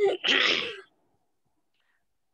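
A single sneeze: a short, sharp, noisy burst in the first second.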